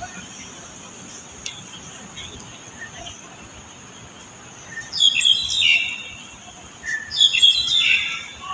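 Small birds chirping: two loud bursts of quick, high chirps, about five and seven seconds in.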